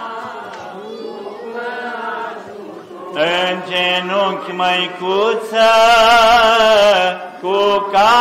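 A man's voice chanting an Orthodox church chant through a microphone. The first three seconds are softer, then come long held notes with a wavering pitch, loudest about six seconds in. A steady low note is held underneath.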